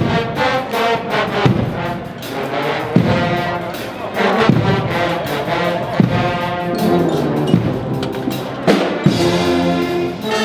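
Guggenmusik carnival band playing in full: brass (trumpets, trombones, sousaphones) over snare drums. A heavy accented drum stroke lands about every second and a half.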